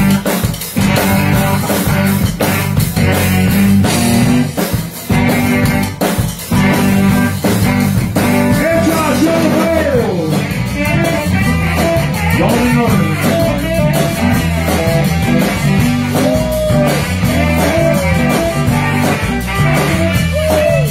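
A live zydeco band plays an up-tempo tune on accordion, electric guitar, congas, rubboard and drum kit, with a steady driving beat. From about eight seconds in, a bending melody line rides over the band.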